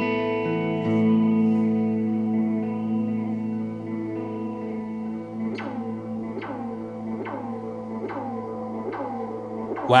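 Electric guitar through a pedalboard and a Fender Bassman 4x10 amp: a held chord rings and slowly fades. About halfway in, a short plucked figure starts repeating at even spacing, a little more than once a second, happening again and again as a loop or repeating echo from the pedals.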